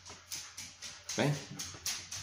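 A man's voice calling a dog with a short 'ven' about a second in, over a run of quick, light clicks and taps.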